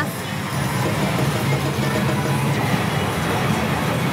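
Pachislot parlor din: the steady, dense mix of many slot machines' music and effects.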